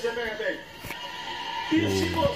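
A man's voice, stopping after about half a second and starting again near the end, with a quieter pause between.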